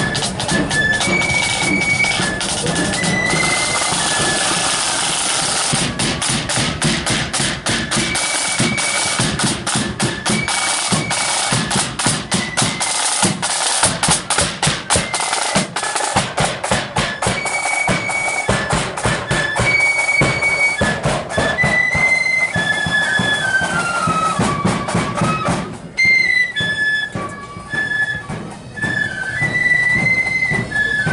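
Marching flute band playing a tune: flutes carry a high melody over rattling snare drums and a bass drum. The drumming is densest through the middle and drops away near the end, leaving mostly the flutes.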